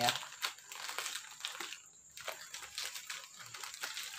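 A plastic courier mailer bag crinkling and crackling irregularly as fingers pick and tug at it to get it open, with a short lull about halfway through.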